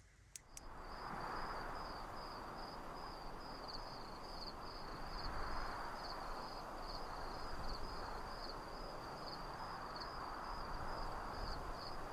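Crickets chirping faintly at night: a steady high-pitched trill pulsing about twice a second, over a soft, even background hiss.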